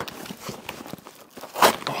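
Cardboard box and paper packing being handled and rustled, with scattered crinkles and light knocks.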